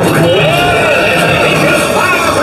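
A loud, wavering cry that starts suddenly and swoops up and down in pitch several times.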